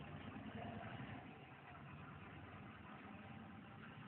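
Faint steady room tone: a low hum and hiss with nothing else standing out.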